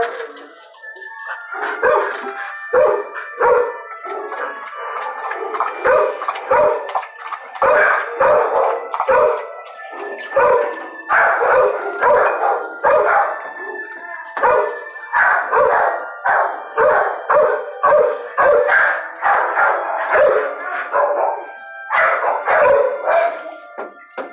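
Dogs barking in a shelter kennel ward, short barks coming one after another about one to two a second.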